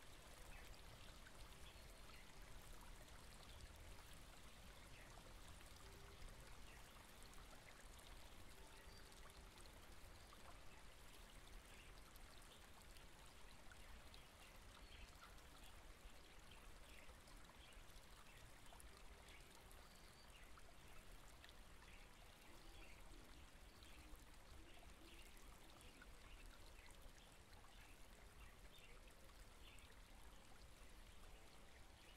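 A small stream trickling and babbling, faint and steady, with many small splashy gurgles.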